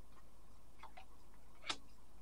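Tarot cards handled on a tabletop: a few faint light clicks, the clearest one shortly before the end, over a low steady hum.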